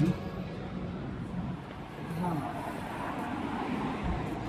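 City street ambience: a steady wash of traffic noise with faint, indistinct voices in the distance.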